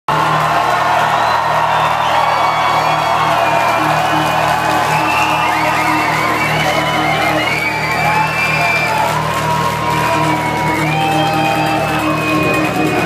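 Live concert music played loud through the venue's PA, over a steady low drone, with the crowd cheering and whooping.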